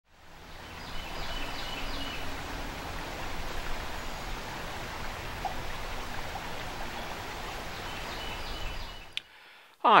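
Creek water running over a shallow riffle, a steady rushing that fades in at the start and stops about nine seconds in, with a few faint bird chirps near the start and again near the end.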